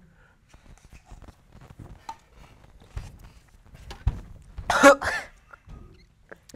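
Faint small knocks and rustles, then a loud cough and gag about four and a half seconds in, from a person who has just swallowed warm hot dog water.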